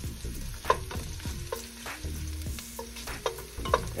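Sliced garlic sizzling in hot oil in a metal saucepan, stirred with a wooden spatula that scrapes and taps against the pan several times. The garlic is being sautéed until translucent.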